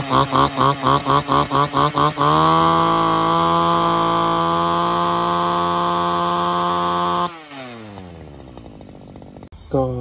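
Robin NB351 two-stroke brush cutter engine opened up about two seconds in to a steady, high-revving whine, held for about five seconds. Its revs then fall away sharply. Before the rev-up there is a rhythmic pulsing of about four beats a second.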